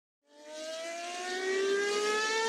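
Racing car engine accelerating: a single engine note fades in and rises steadily in pitch.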